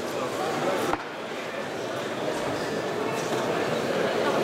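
Crowd chatter in a large hall: many voices talking at once in a steady murmur, with one sharp knock about a second in.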